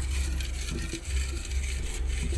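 A hand stirring folded paper slips inside a glass jar, giving a faint rustle and scrape over a steady low hum.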